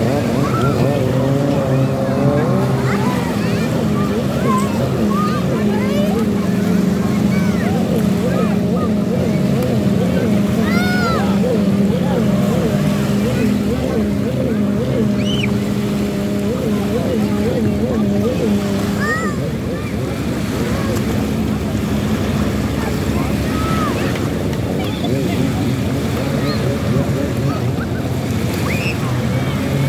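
Jet ski engines running close offshore, a steady drone whose pitch wavers up and down through the middle stretch. Surf washes at the shoreline underneath.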